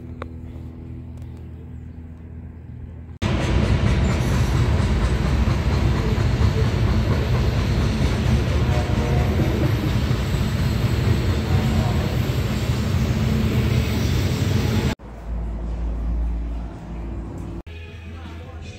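Freight train of hopper cars passing close by: a loud, steady rumble that lasts about twelve seconds and starts and stops abruptly. It is framed by quieter steady hums before and after.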